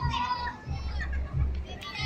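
Children's high-pitched voices and chatter, with low rumbling bumps underneath.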